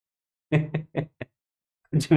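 Dead silence from a noise-gated microphone, broken about half a second in by three short, clipped bursts of a man's voice, like syllables cut off by the gate.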